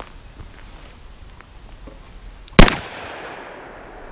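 A single shot from a Smith & Wesson Model 637 snub-nose .38 Special revolver firing a Buffalo Bore +P 110-grain lead-free copper hollow point, about two and a half seconds in. It is a sharp crack with an echo that fades over about a second.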